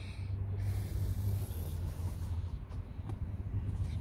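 A steady low outdoor rumble, with a soft breathy hiss during the first couple of seconds.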